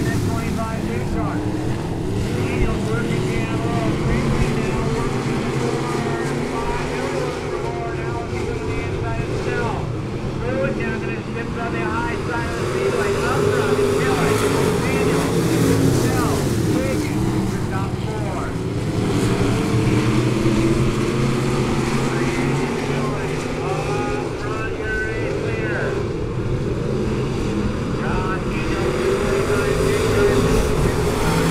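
Several dirt-track stock-car engines racing together, their revs rising and falling as the cars go through the turns and down the straights.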